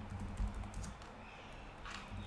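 Computer keyboard being typed on: a run of quick key clicks, a brief pause, then a louder keystroke near the end.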